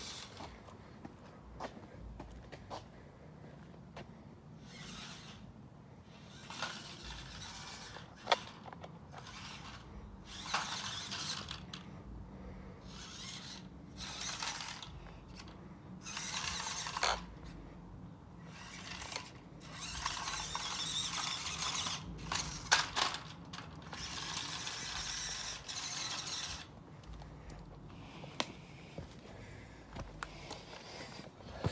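Small electric RC crawler truck driving in short bursts, its motor and gears whining and grinding with each throttle pull as it crawls over tree roots, with quieter pauses between.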